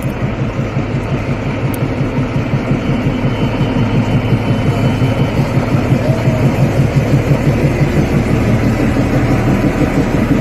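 Diesel engine of a ZDM3 narrow-gauge locomotive running at idle, a steady low throb that grows gradually louder.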